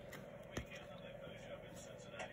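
Quiet handling of baseball trading cards as a pack is flipped through, with a single light card tap about half a second in.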